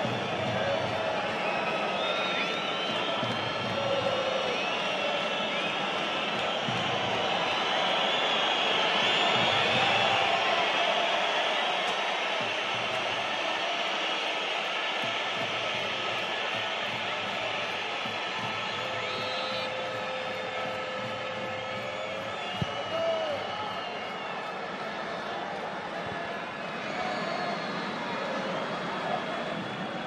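Indistinct voices of players and onlookers calling and chattering across an outdoor football pitch, with one short knock about two-thirds of the way through.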